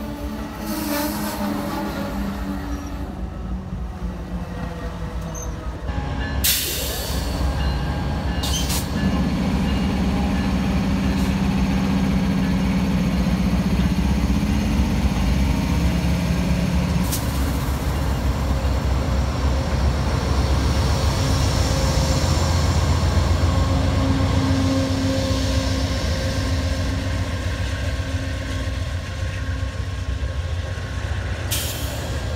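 Amtrak Southwest Chief passenger train passing close by. Its GE P42DC diesel locomotive goes by with a steady low engine tone from about a third of the way in to past the middle, then double-deck Superliner cars roll past with loud wheel and rail rumble.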